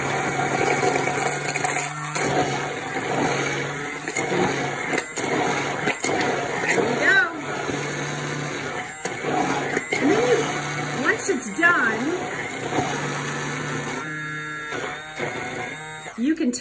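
Hand-held immersion blender running in a tall plastic beaker, its motor humming steadily as it emulsifies oil, egg, mustard and lemon into mayonnaise. There are several brief breaks in the hum as the blender is worked.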